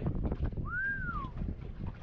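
A single short whistled note that rises and then falls, heard once in the middle, over steady low background noise.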